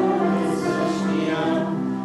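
A congregation singing a hymn together, many voices holding long, drawn-out notes.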